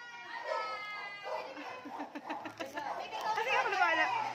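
Several people talking at once, with some high-pitched voices among them.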